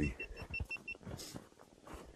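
Footsteps crunching in snow along a trodden path, with a quick run of about seven short, high beeps in the first second.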